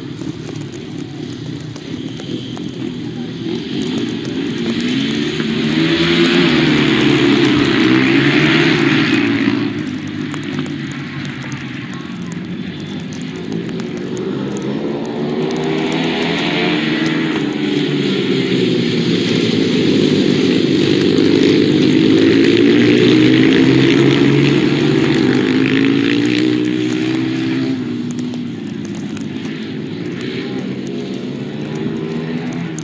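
Several ice speedway racing motorcycles running together, their engines revving up and down in overlapping tones as they race through the corners. The pack is loudest about six to nine seconds in and again from about twenty to twenty-five seconds in.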